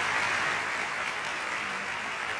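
Congregation applauding, a steady spread of clapping that eases off slightly.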